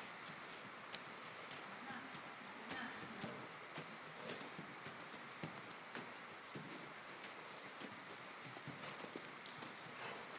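Hooves of a Percheron draft horse thudding softly on an indoor arena's dirt footing as it is ridden, in an irregular run of faint knocks about one or two a second.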